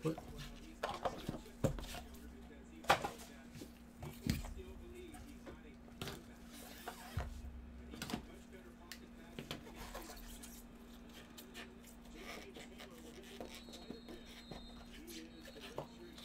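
Gloved hands handling a cardboard trading-card box and its cards on a table: scattered taps, clicks and light knocks as the box is opened and the cards slid out, busiest in the first half, over a steady low electrical hum.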